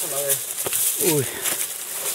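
A man's short exclamation over the rustle and scrape of leafy branches brushing against backpacks and the camera while pushing through dense brush, with one sharp click about two-thirds of a second in.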